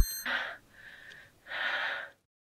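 A man breathing heavily: two strained, breathy gasps about a second apart.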